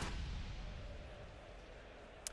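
A low boom sound effect marking an animated logo sting, hitting suddenly and fading away over about two seconds.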